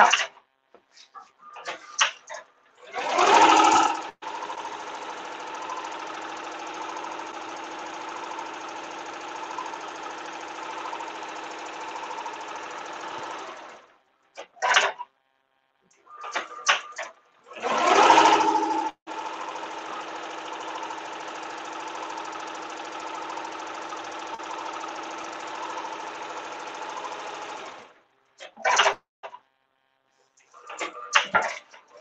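Tajima multi-needle embroidery machine stitching steadily, in two stretches of about ten seconds. Each stretch begins with a louder burst lasting about a second, and between them the machine stops briefly with a few short clatters.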